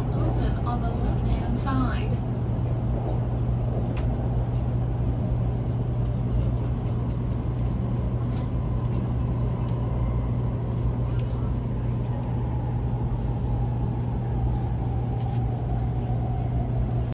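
Steady low hum and rumble of a THSR 700T high-speed train car's interior, with passengers' voices briefly at the start. About halfway through a faint thin whine comes in and slowly falls in pitch toward the end.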